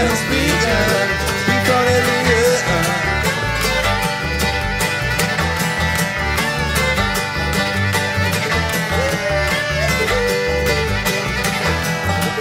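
Acoustic bluegrass string band playing an instrumental break: a fiddle melody over banjo rolls, mandolin, acoustic guitar and upright bass.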